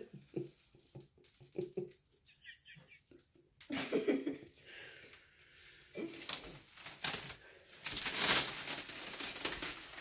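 Clear plastic wrap stretched across a doorway crinkling and rustling as a person pushes and pulls at it by hand, in a few separate bouts, loudest about eight seconds in.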